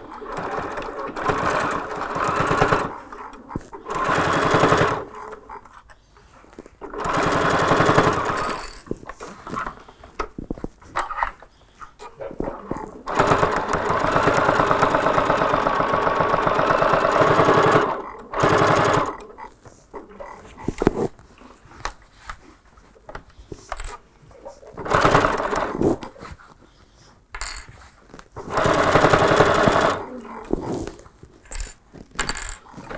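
Electric sewing machine stitching a top-stitch seam through quilted, fleece-backed fabric in a series of stop-start runs, the longest about five seconds near the middle, with pauses between runs as the work is repositioned.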